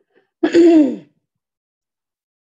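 A person clearing their throat once, a short voiced sound that falls in pitch and lasts about half a second.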